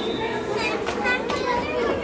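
Several children's voices chattering and calling out together as they play a game, with a couple of short knocks around the middle.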